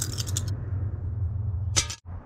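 Small plastic two-colour counters rattling as they are shaken in cupped hands for about half a second, then a short clatter near the end as they drop onto a glass tabletop. A steady low hum runs underneath.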